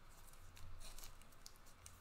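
Panini Prizm trading cards being flipped through by hand: a run of faint, quick snaps and slides as card edges click past one another.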